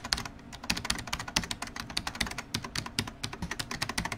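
A fast, irregular run of light clicks, many a second, with no real pause.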